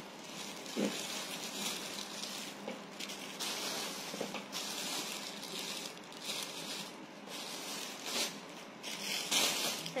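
Rustling and handling noise from garments being picked up off a pile, coming in several short bursts over a steady hiss.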